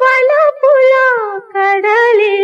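A woman singing unaccompanied, holding long notes that glide smoothly between pitches.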